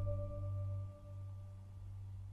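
Background music: a soft, sustained bell-like note held over a low drone, the note fading away about halfway through.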